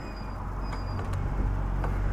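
Yamaha NMAX scooter's single-cylinder engine running steadily at low speed as the scooter rolls slowly along the curb.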